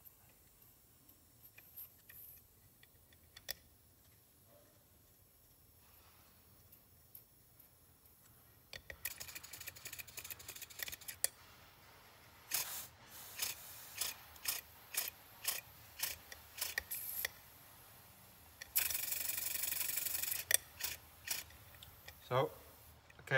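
Accucraft Ruby live steam locomotive chassis running on compressed air, its cylinders puffing out air as the wheels turn. After a quiet start come a quick rapid run of puffs, then sharp exhaust puffs about two a second, then a steady hiss of air for about a second and a half, then a few more puffs. The piston valve timing is still off: pretty good forward, pretty bad reverse.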